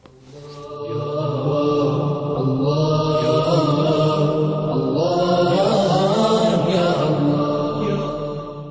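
Outro vocal chant in the manner of an Islamic nasheed: a drawn-out melodic voice over a steady low drone, fading in over the first second.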